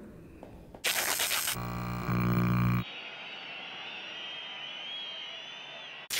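Electronic glitch sound effects: a short burst of TV-style static hiss, then a low electric buzz for about a second and a half, then a thin, wavering high-pitched whine.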